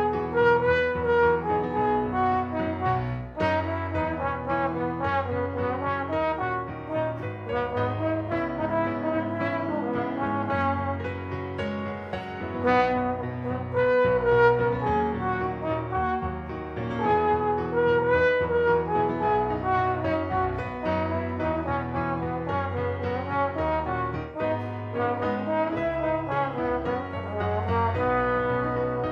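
Slide trombone playing a melody in held, connected notes over a recorded accompaniment with piano and low bass notes.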